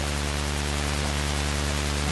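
Steady electronic drone: a dense bed of held low tones under an even hiss, unchanging through the pause in the vocal line.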